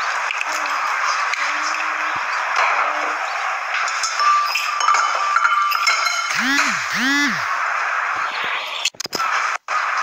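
A television drama's soundtrack with brief dialogue, heard under a steady loud hiss. A little past six seconds come two short rising-and-falling tones, and the sound drops out briefly twice near nine seconds.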